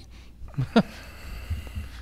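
A man's brief laugh, then a pause with a faint steady low hum in the room.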